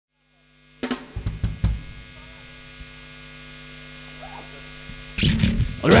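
Several sharp drum-kit hits about a second in, then the steady hum of stage amplifiers. Just after five seconds, much louder band and crowd noise comes in, and a man's voice starts near the end.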